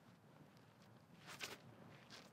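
Faint footsteps and scuffs of a disc golfer's throwing motion on the tee, with one sharper scuff about one and a half seconds in.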